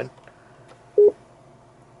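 A single short electronic beep from the Honda CR-V's hands-free phone voice-command system about a second in: the prompt that it is ready for a spoken command.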